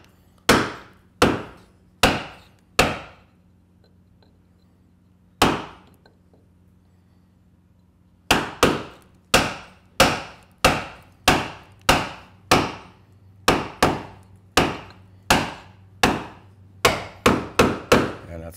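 Small leather mallet tapping a steel caulking iron, setting caulking cotton into the plank seam of a wooden boat hull. Four sharp taps, a pause with a single tap, then a steady run of about two taps a second.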